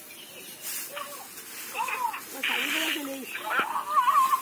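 Dry rice straw rustling as it is picked up and gathered into a bundle by hand, with a short hissing rustle about two and a half seconds in. Voices are heard faintly in the background.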